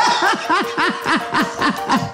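A person laughing hard in a fast run of short, falling bursts, with background music underneath.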